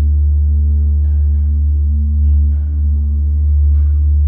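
Steady, low droning music with held, bell-like tones layered above it, accompanying the dance. Faint higher sounds surface briefly about a second in, a little past the middle and near the end.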